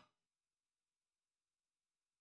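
Digital silence from a muted audio track, after a louder sound cuts off abruptly at the very start.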